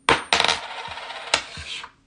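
A coin flicked up with the thumb lands on a hard tabletop and bounces and rattles with a metallic ring for nearly two seconds before it settles.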